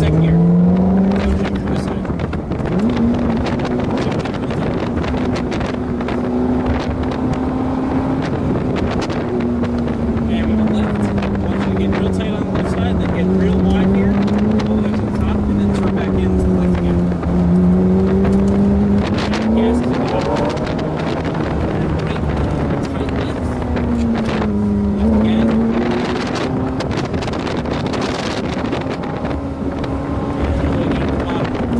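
Ferrari F430's 4.3-litre V8 engine driving under way, heard from inside the open-top cabin. Its pitch climbs in the first two seconds, then rises and falls gently as the car is driven, under steady wind rush.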